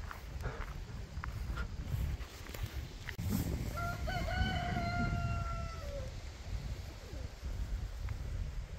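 One long bird call about four seconds in, held level for some two seconds and falling in pitch at the end, over a steady low rumble of wind on the microphone.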